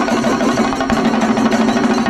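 Singari melam: a group of Kerala chenda drums beaten rapidly with sticks, a loud, dense, unbroken rolling rhythm.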